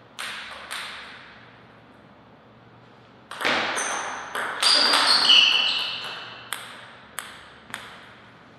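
Table tennis ball bounced twice before a serve, then a short rally of sharp paddle hits and table bounces with ringing pings, and near the end the dead ball bouncing three more times, each bounce quieter.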